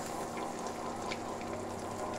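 Butter and spices frying around boiled eggs in a steel kadai, a steady soft sizzle with small crackles, over a low steady hum.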